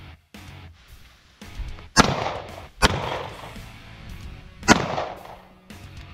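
Three handgun shots over background music: two under a second apart about two seconds in, then a third about two seconds later.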